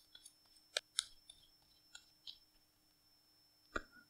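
Faint, scattered clicks and soft snaps of a deck of tarot cards being handled and shuffled in the hands, about five over a few seconds, the sharpest about a second in and just before the end.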